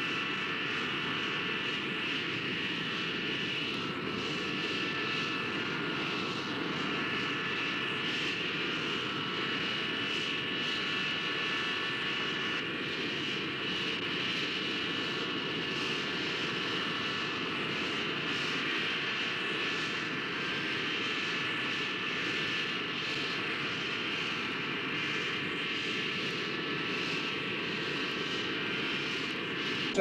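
Jet airliner's turbine engines running steadily: a constant high whine over a low rumble, unchanging throughout.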